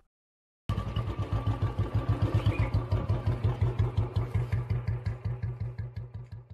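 Royal Enfield single-cylinder motorcycle engine ticking over at idle with an even thumping beat of about six pulses a second. It starts abruptly about a second in and grows quieter near the end.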